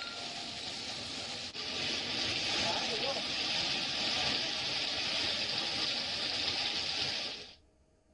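Heavy rain pouring on a waterlogged street, a steady hiss that grows louder about a second and a half in, with vehicles moving through the wet road. It cuts off suddenly near the end.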